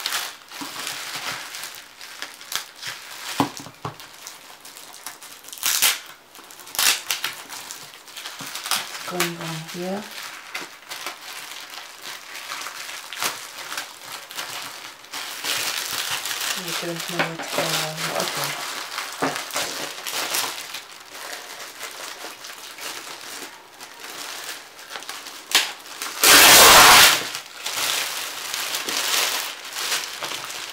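Thin plastic wrapping film crinkling and rustling in irregular bursts as it is pulled and peeled off a large paper pad by hand. About four seconds before the end comes one loud, second-long burst of crackling from the film.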